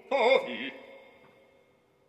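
An operatic voice sings a short phrase with a wide vibrato, cutting off about two-thirds of a second in. Faint sustained piano tones then fade away.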